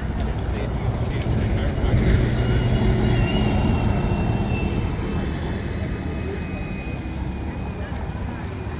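City bus driving past, its engine and tyre rumble swelling to a peak about two seconds in and then fading, with a thin high whine over it that sinks slightly in pitch.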